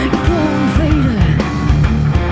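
Rock band playing with guitars, bass guitar and drums, keeping a steady beat; a few notes bend in pitch.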